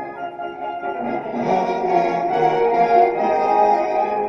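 Orchestral film score with strings and brass, swelling and growing fuller about a second and a half in.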